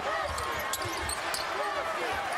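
Basketball being dribbled on a hardwood court, with a few short thuds, under the steady murmur of an arena crowd.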